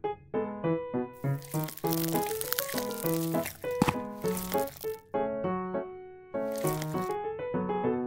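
A small knife cutting down through a miniature chocolate-glazed layer cake, a rustling scrape from about a second in to five seconds and again briefly near the end, over light melodic background music.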